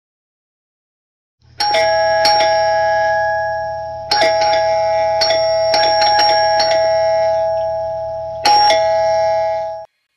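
Doorbell chime sound effect: about ten bell strikes, some in quick pairs, each ringing on over a low steady hum. It starts about a second and a half in and cuts off just before the end.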